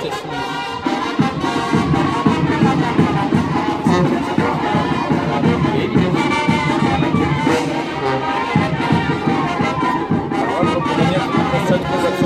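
A Oaxacan brass band (banda de viento) with a sousaphone playing a lively festive tune with a steady beat.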